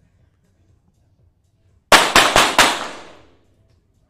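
Four .22-calibre target pistol shots in quick succession, about a quarter second apart, from the finalists firing together, each a sharp crack with ringing reverberation from the range.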